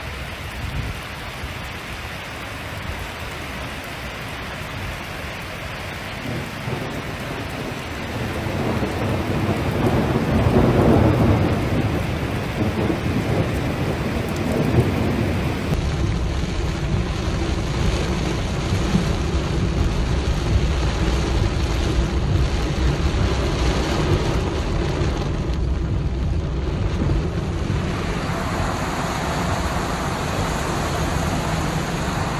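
Heavy rainstorm: a steady rush of rain and water, with a deep rumble swelling about ten seconds in. Partway through, it changes to rain beating on a moving car, over a low road rumble.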